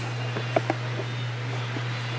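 A steady low hum with two faint clicks just after half a second in.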